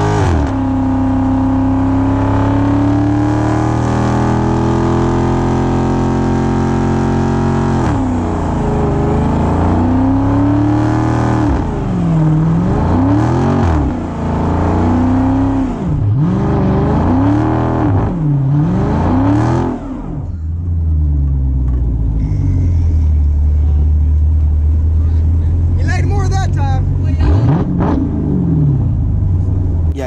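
Dodge Charger's Hemi V8 during a burnout, held at high revs for several seconds, then revved up and down in repeated swells about every two seconds. About two-thirds of the way in it drops to a lower steady note, with one short rev near the end.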